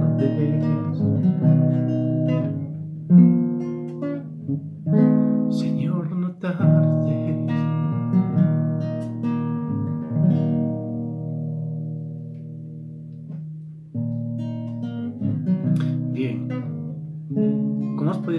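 Nylon-string classical guitar strumming chords as an instrumental close to the sung psalm. Chords are struck every second or two; around the middle one chord is left ringing and fades away over a few seconds, then strumming picks up again.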